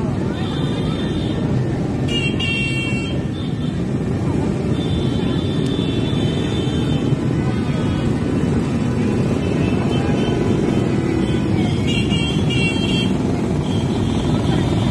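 Steady street noise from a moving crowd and motorcycles, with high-pitched horn toots about two seconds in, a longer one around the middle, and more near the end.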